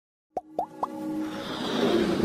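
Three quick pops, each sweeping upward in pitch, a quarter second apart, followed by a swelling musical riser: the sound effects of an animated logo intro.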